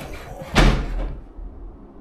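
A person dropping onto a bed mattress: one thump about half a second in.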